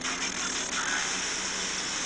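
Steady hiss of radio static from a phone's speaker, the output of a USB TV-tuner software-defined radio being tuned across the FM band.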